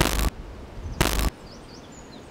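Two short bursts of harsh static-like noise, a digital glitch sound effect, about a second apart, each lasting about a third of a second.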